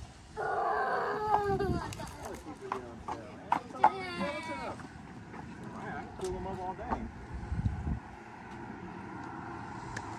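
Voices speaking and calling out in short bursts, with a few sharp clicks among them, over steady background noise.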